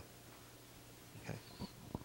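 Quiet room tone with a faint steady low hum, and a brief, soft "okay" from a voice a little past halfway.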